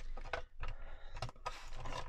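Plastic letter punches being handled and slotted into the tray of a We R Memory Keepers Word Punch Board: a few small clicks and scrapes of plastic on plastic.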